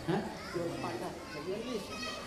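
Faint background voices, children's among them, talking and calling.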